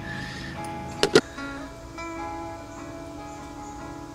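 Acoustic guitar music with held, ringing notes, and two sharp clicks close together about a second in.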